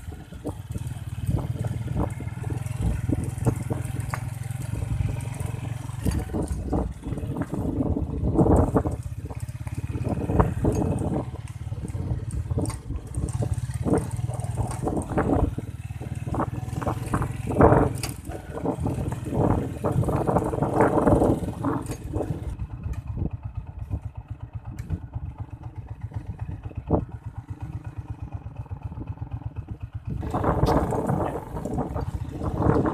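Small motorcycle riding along a rough dirt track: a steady engine drone with frequent rattles and knocks as the bike goes over bumps. The sound eases and grows quieter for the last several seconds.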